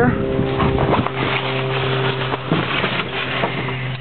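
Steady low hum of a running lawn tractor engine, under rustling and handling noise from the camera being moved.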